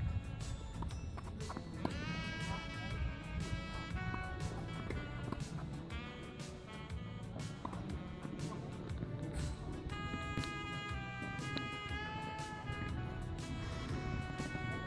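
Music with gliding melodic notes plays throughout, over a scatter of short sharp clicks.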